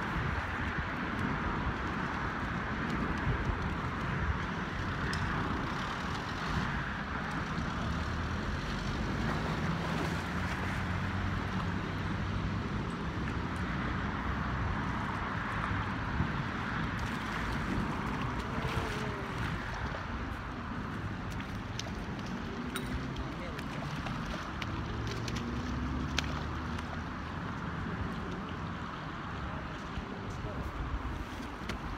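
Steady rush of flowing river water, with road traffic running over the bridge.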